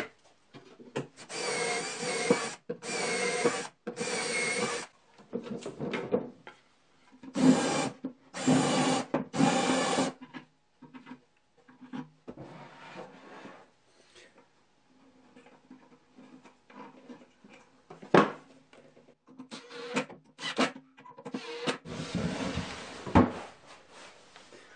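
A power drill boring holes into a wooden drawer front through a wooden drilling template, in two sets of three runs about a second each. Later come quieter clicks and scraping as screws are handled and driven.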